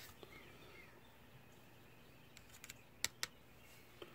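Light clicks and taps of a powder dipper being tapped to trickle a flake or two of gunpowder onto a reloading scale's pan; a few faint ticks, then two sharper clicks about three seconds in, in otherwise near-quiet.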